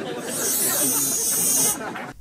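A steady high hiss lasting about a second and a half, over people talking.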